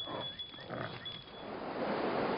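Reindeer grunting faintly, a few soft grunts in the first second and a half, followed by a steady outdoor hiss that grows towards the end.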